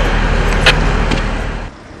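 Vehicle engine running steadily under outdoor noise, with a sharp knock about two-thirds of a second in; the sound drops away abruptly shortly before the end.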